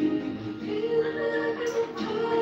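Karaoke: a song's backing music playing through speakers, with a melody sung into the microphone in long held notes.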